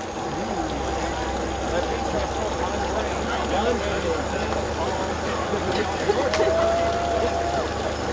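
Indistinct chatter of people near the track over a steady low hum, with a single held tone that rises at its start and lasts about a second and a half, a little over six seconds in.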